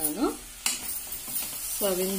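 Cauliflower stir-fry sizzling in a pan as a spoon stirs it, with one sharp clink of metal on the pan a little over half a second in.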